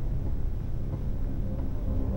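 Steady low rumbling drone of a horror drama's tense underscore and sound design, with faint held tones above it.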